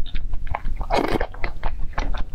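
Close-miked chewing of a mouthful of bean porridge: many small wet mouth clicks and smacks, with one louder, longer wet mouth sound about a second in.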